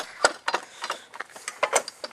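Irregular sharp clicks and knocks, about five a second, the loudest about a quarter-second in.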